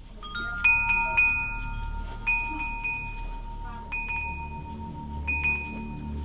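Metal-tube wind chime ringing: the tubes are struck irregularly, a few times close together in the first second or so and then singly every second or two, each clear tone ringing on. A low rumble runs underneath.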